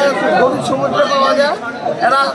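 A man speaking, with crowd chatter behind him.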